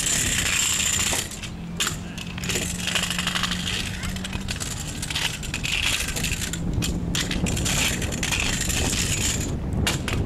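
Kick scooter wheels rolling over concrete skatepark ramps, a continuous rough rolling hiss broken by several sharp clicks and rattles from the scooters.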